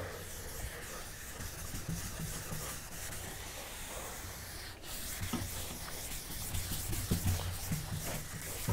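Chalkboard eraser scrubbing chalk off a blackboard, a steady rubbing hiss of repeated wiping strokes with a brief break about halfway through.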